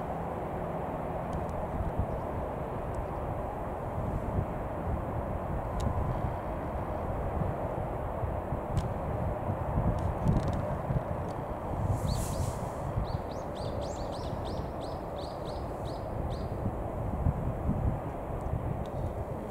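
A small bird gives a quick series of about a dozen short, high, rising chirps about two-thirds of the way through, over a steady low rumble of outdoor background noise.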